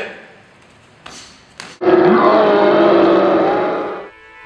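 A loud, harsh, roaring yell from one voice lasting about two seconds, starting about two seconds in and held at a steady pitch, preceded by two short noisy bursts.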